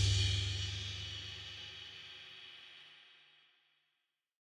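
The closing chord of a children's song ringing out with a crash cymbal, fading away over about three seconds.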